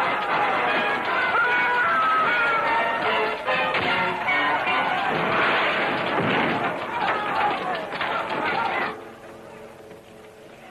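Loud orchestral film score mixed with men's voices shouting, cut off sharply about a second before the end.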